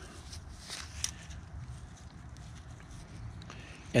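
Gloved hands working a hitch cord around a climbing rope, tucking the cord through the wraps: faint rope and glove rustling with a few soft scuffs about a second in, over a low rumble.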